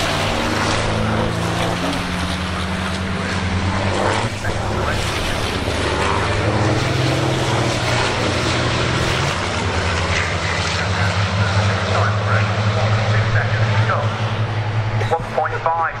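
Racing trucks' heavy diesel engines running hard on the circuit, a continuous low drone that swells and shifts in pitch as trucks go by.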